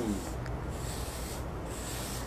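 Steady faint background noise with a low hum underneath, with no distinct events.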